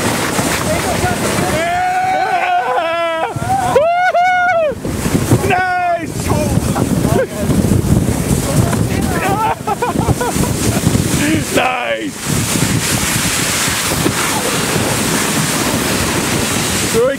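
Steady rushing noise of wind on the microphone and snow tubes sliding fast over snow during a downhill run. Several high, loud yells come in about two to six seconds in, and shorter ones later.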